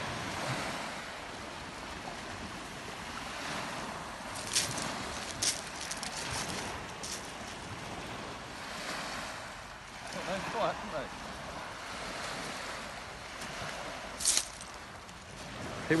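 Waves washing on a shingle beach with wind on the microphone: a steady rushing noise. A few brief sharp sounds break through it about four to five seconds in and again near the end.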